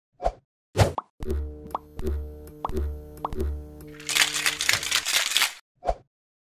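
Sound effects for an animated logo: a few quick pops, then a short electronic music sting of held tones with four deep pulses. It ends in a bright, hissing whoosh about four seconds in and a last small pop.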